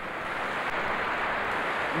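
A large indoor crowd applauding: a steady wash of clapping and crowd noise that swells slightly.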